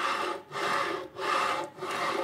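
HepcoMotion GV3 V-guide carriage pushed by hand back and forth along its steel V-rail. Its V-groove bearing wheels roll through a slurry of Weetabix and milk, giving a rasping rumble in repeated strokes of about half a second, roughly three in two seconds. The wheels ride straight through the muck, which is the self-cleaning action of the V guide.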